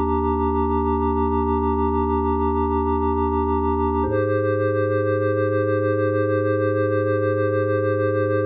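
Experimental electronic synthesizer music: sustained, organ-like chords over a low bass tone, with no beat. The chord changes to a new one about halfway through.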